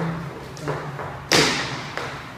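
Hard-soled shoes striking a wooden floor in dance steps: a couple of lighter footfalls, then one sharp, loud stamp about a second and a half in.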